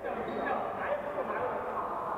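Badminton court shoes squeaking on a wooden court floor in short, sliding squeals, over the background voices of players in the hall.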